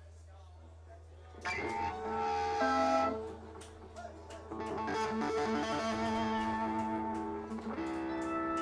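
A low steady hum, then an electric guitar through a stage amplifier sounding a few held chords and notes from about a second and a half in, with a short gap near the middle before more ringing notes.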